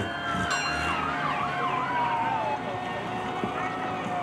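Fire engine siren winding down in a long, slow fall of pitch, with a second wavering siren tone over it during the first half.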